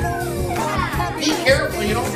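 A group of young children shouting and calling out over one another, with background music playing underneath.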